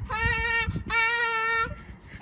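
A young girl's voice singing two long, steady held notes, the second right after a brief break about three-quarters of a second in.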